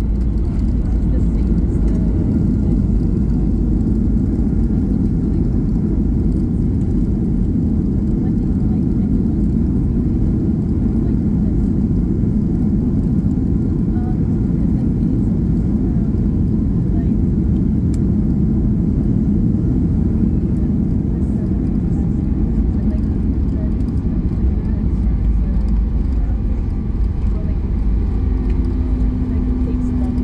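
Cabin noise of a Ryanair Boeing 737 rolling along the runway after touchdown: a steady low rumble of engines and wheels. A steady hum-like tone comes in near the end.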